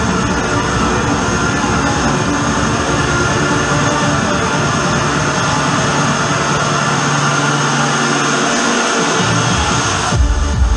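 Hard trance breakdown played loud over a club sound system: a dense, steady wash of synth and noise with no kick drum. The bass drops away about seven seconds in.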